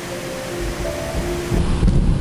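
Background music with a few held notes, then from about one and a half seconds in a low, dull rumble of thuds as a tricker's feet and hands strike the sprung gym floor.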